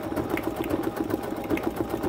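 Bernina 880 Plus embroidery machine running, with a rapid, even rhythm of stitches as it tacks down a sheet of Top Cover film.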